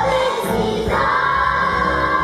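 Young stage cast singing a song together as a choir, moving to a long held note about a second in.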